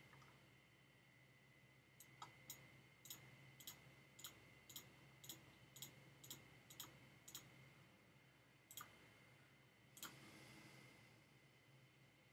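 Faint computer mouse clicks, about two a second for several seconds, then two more spaced out, over a faint steady high-pitched electronic whine.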